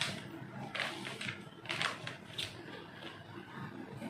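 A plastic vacuum-sealer bag crinkling as it is handled and set into the sealer, heard as a few faint, irregular crackles.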